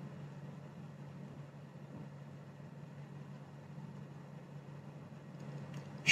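Faint room tone: a steady low hum with light hiss.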